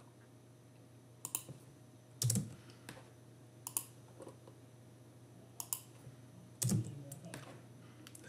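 Sparse computer keyboard keystrokes, about eight scattered taps with pauses between them, over a faint steady hum.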